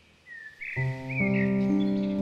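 A songbird chirping over a quiet forest background, then slow solo piano chords come in about three quarters of a second in and build.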